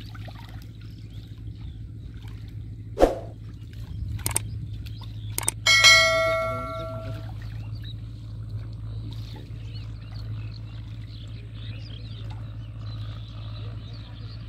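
A single bright metallic ding that rings for about a second and a half, preceded by a sharp knock, over a steady low hum.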